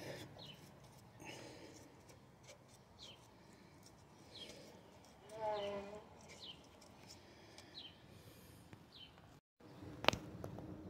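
Faint bird chirps: short, high, falling calls repeated every second or so, with one short lower pitched call about five and a half seconds in.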